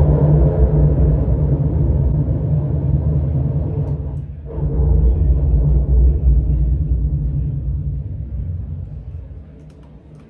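Live drone music: a loud, low rumbling wash from amplified guitar and effects pedals. It dips briefly midway, swells back, and fades away near the end.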